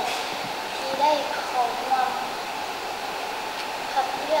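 A girl speaking quietly in short phrases for the first couple of seconds, over a steady background hiss that carries on alone afterwards.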